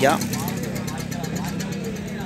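A steady low engine hum with no change in pitch, after the tail end of a man's voice.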